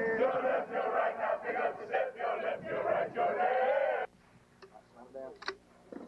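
A marching formation of soldiers chanting a military cadence in unison with a regular rhythmic beat. The chant cuts off suddenly about four seconds in, leaving a quiet background with a few faint clicks.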